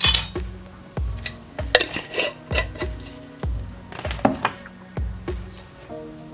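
A spoon stirring in a glass pitcher, clinking against the glass several times, over background music with a steady beat.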